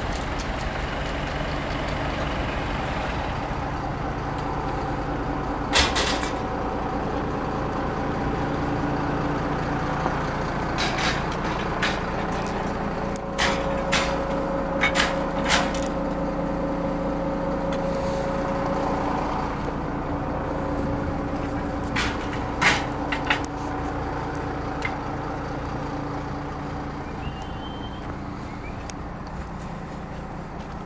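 A vehicle engine running steadily, with scattered sharp clicks and knocks, several of them bunched in the middle.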